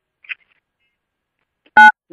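A single short electronic beep near the end, a voicemail system's tone marking the end of one saved message before the next plays; silence before it.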